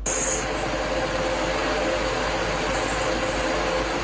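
A steady, loud rushing noise with a faint hum running through it. It starts abruptly and holds even, like a machine or fan running close by.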